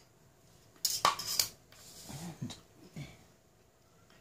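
A steel ruler put down on the drawing board, giving a quick run of sharp metallic clinks about a second in. A few softer, short sounds follow.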